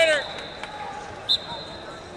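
Busy wrestling-arena background with a loud, short shouted call right at the start. About a second and a quarter in comes a brief, sharp whistle chirp.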